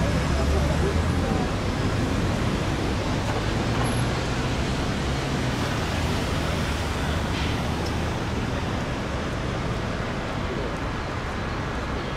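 Steady city traffic noise, with a low engine hum underneath that rises and falls a little.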